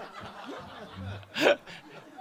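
Light chuckling and snickering from people in a meeting room, with one short laugh about one and a half seconds in.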